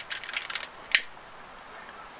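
Long-neck utility lighter clicked once about a second in, its trigger firing the igniter to light the flame. A few faint handling ticks come before it.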